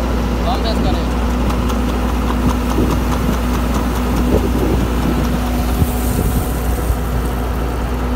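A machine's engine running steadily at idle, a constant low hum.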